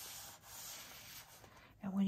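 Sheets of 6x6 patterned paper sliding and rubbing against one another as a fanned stack is gathered together: a dry rustling hiss that starts with a light click and fades away after about a second.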